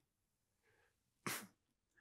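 A man's single short, sharp burst of breath from the throat or nose, about a second in, after a faint intake of breath.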